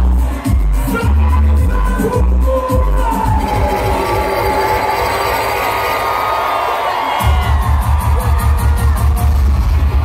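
Loud dance music over a concert sound system, with a crowd. The heavy bass beat drops out about three seconds in, leaving crowd voices and singing over a thinner mix, and comes back in hard about seven seconds in.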